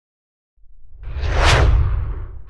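Whoosh sound effect over a deep bass rumble, swelling in about half a second in and building to a peak shortly before the end: a logo-intro sting.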